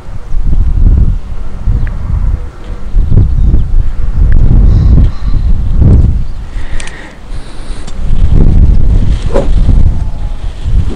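Gusting wind buffeting the microphone, a loud low rumble that swells and fades every second or so. Near the end comes a single sharp crack, a driver striking a golf ball.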